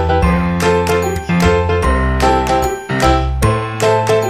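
Background music with a steady beat: bright, struck notes over a low sustained bass line.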